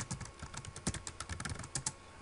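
Computer keyboard typing: a quick, irregular run of key presses as a password is entered.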